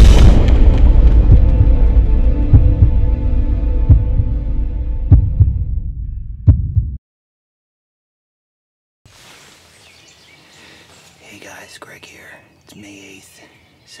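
Intro music ending on a loud, deep cinematic boom that dies away over about seven seconds with a couple of lighter hits, then cut off suddenly. After two seconds of silence, faint background ambience with a few soft sounds comes in.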